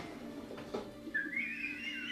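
A faint, high whistling tone that starts about a second in, rises in pitch, then wavers. A faint knock comes shortly before it.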